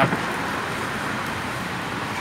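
Steady road traffic noise, an even rush of sound with no distinct events.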